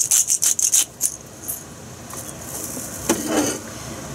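Plastic packaging crinkling in quick, sharp bursts during the first second as shredded cheese is sprinkled by hand over a gratin, then quieter handling sounds.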